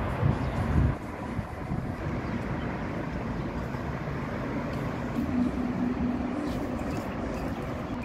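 Steady outdoor noise, a broad rumble and hiss, with a few louder low thumps in the first second.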